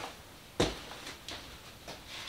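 Long wooden board being turned over by hand on a work table: one short knock about half a second in, then a few lighter taps.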